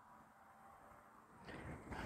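Near silence: faint background hiss, with a faint low noise coming up about one and a half seconds in.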